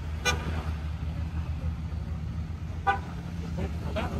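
Two short vehicle horn toots about two and a half seconds apart, over the steady low rumble of a slow convoy of trucks and escort vehicles passing through an intersection.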